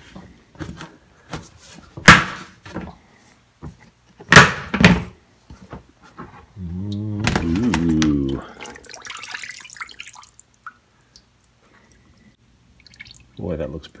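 Plastic storage tote lid being unclipped and lifted off, with a series of snapping clicks and knocks, the loudest about two seconds in and again about four seconds in. This is followed near the middle by a man's drawn-out, wavering hum.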